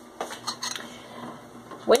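A few light clinks and knocks of metal kitchenware, a spoon against a stainless steel saucepan, in the first second or so.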